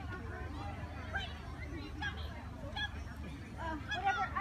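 Voices calling out and talking across an open field, short rising and falling shouts over background chatter, with a steady low rumble underneath.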